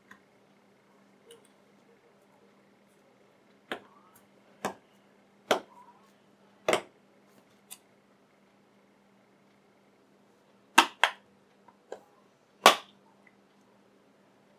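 Sharp plastic-and-metal snaps as the plastic front and stainless steel back of a 3rd-generation Apple iPod are pressed together and its clips catch: four snaps a second or so apart, then a pause, then three more near the end.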